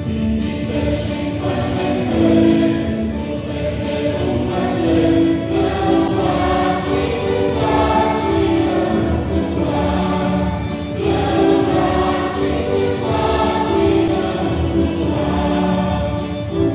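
A choir singing a slow hymn in held notes, with organ accompaniment, in a reverberant church.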